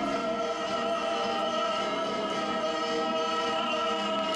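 Operatic-style solo male voice sustaining one long, steady note over musical accompaniment.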